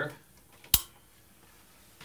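An overhead light switch clicked off: one sharp click under a second in.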